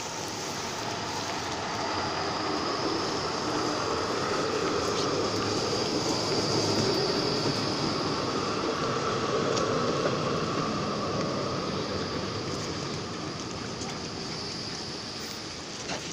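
Articulated low-floor tram rolling slowly past close by on curved street track, steel wheels on rail with a high whine over the running noise. The sound swells to its loudest about halfway through as the cars go by, then fades.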